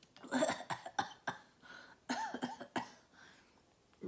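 A woman coughing in two short bouts, one just after the start and a second about two seconds in.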